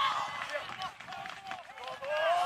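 Several men's voices shouting and calling at once: football players and spectators, overlapping with no clear words.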